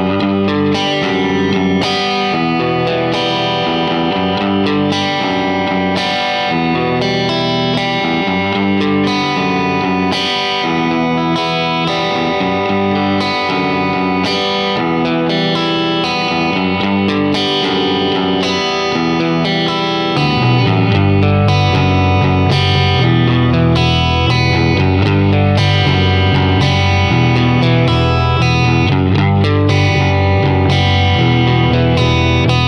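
Electric guitar playing a riff on the top two strings over bass, with a steady beat. The low end grows heavier about twenty seconds in.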